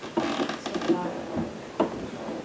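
Quiet talking in a small room, including a brief "yeah", with a sharp click near the end.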